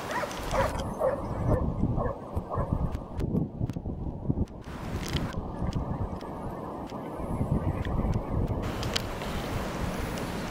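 Wind buffeting the microphone outdoors: a steady low rumbling noise, with a few short sharper sounds in the first three seconds.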